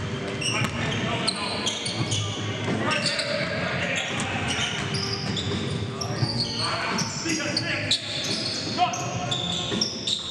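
Live basketball game sound in a large gym: a basketball dribbled on the hardwood floor, sneakers squeaking in short sharp chirps, and players' voices calling out.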